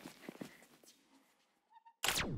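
Near silence: room tone with a few faint knocks in the first second and a faint short two-pulse beep near the end.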